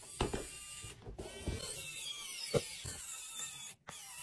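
Small pen-style cordless electric screwdriver running and driving a screw, a whirring motor whine that wavers in pitch, with a few clicks. It cuts off suddenly near the end and starts again briefly.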